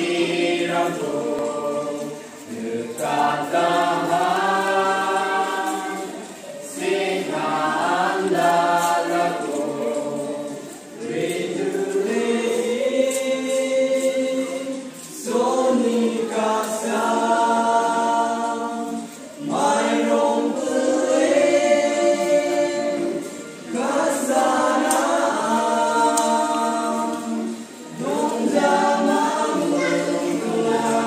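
A group of voices singing unaccompanied, in phrases of about four seconds with short breaks between them.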